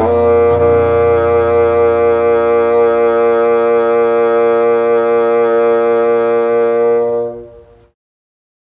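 Bassoon played by a beginner, stepping to a new note and holding it as one long, steady final note, which fades out and stops about seven and a half seconds in.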